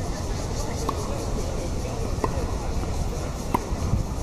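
Tennis ball struck back and forth in a doubles rally: sharp racket-on-ball pops about every second and a half, with the loudest near the end. A steady low rumble runs underneath.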